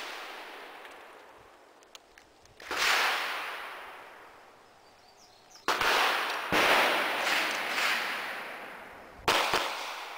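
Gunshots from a firearm on an outdoor range, each followed by a long echo: a single shot a few seconds in, two more about a second apart past the middle, and a quick double near the end.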